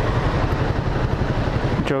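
Suzuki Raider 150R's single-cylinder four-stroke engine running steadily, heard as a fast, even low pulsing rumble.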